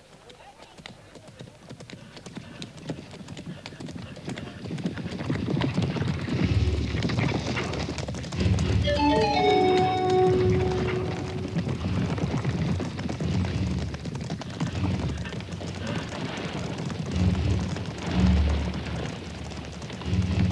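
Hoofbeats of galloping horses, growing from faint to loud over the first several seconds as the riders approach, then pounding steadily. From about nine seconds in, film music with long held notes plays over the hoofbeats.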